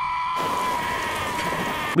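A clone trooper's drawn-out scream of pain, one long cry held at a high, steady pitch that sags a little toward the end, raw enough to sound real. A hiss joins it about a third of a second in.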